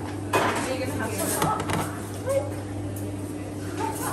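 Dishes clatter sharply about a third of a second in, followed by a few lighter knocks, over a steady low hum and brief snatches of voices.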